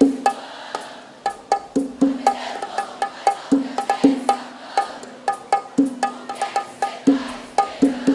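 Live band playing a sparse, rhythmic instrumental intro: short knocking clicks and plucked-sounding pitched notes in a steady pattern, without full drums or bass.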